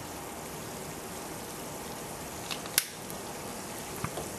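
Steady fizzing and bubbling of hydrogen rising from aluminum granules reacting with hot water and a catalytic carbon, with a few sharp clicks past the middle, the last one the loudest.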